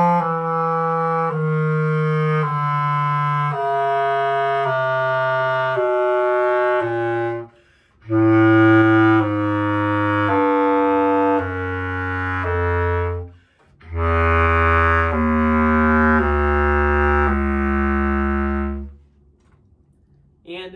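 Bass clarinet playing a slurred descending chromatic scale down from open G, one note roughly every second, in three phrases with short breaks for breath. The deepest notes come in the last phrase.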